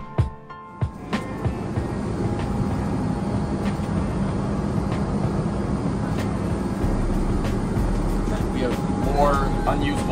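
Background music with a beat fades out in the first second or so. A steady drone inside the C-5M Super Galaxy's fuselage takes over: an even rush with a low hum underneath. Voices start near the end.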